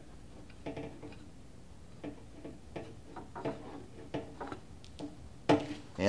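Light, irregular clicks and taps of plastic and metal parts as a fuel pump module's flange is worked down its long guide bolts onto the lower pump assembly, with a slightly louder tap near the end.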